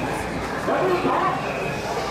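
Mikoshi bearers shouting their carrying chant in chorus, a loud group shout starting about half a second in, over a steady crowd hubbub.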